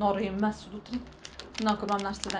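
A woman's voice, with a quick run of light clicks and taps in the middle as a small purple packet is handled in her hands.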